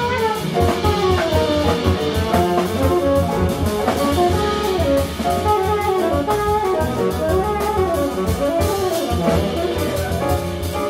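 Jazz quintet playing live: tenor saxophone, guitar, piano, double bass and drum kit together. Quick, moving melodic lines run over a busy drum and cymbal groove and a walking bass.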